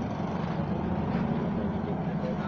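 Steady low rumble of background vehicle noise, like an engine running nearby, holding an even level throughout.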